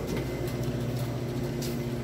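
Steady low machine hum made of several held tones.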